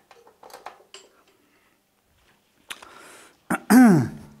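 Light clicks and handling noise as a flash sync cable is plugged into a studio flash head, with a quiet gap in the middle. Near the end a man makes a short, loud vocal sound that falls in pitch.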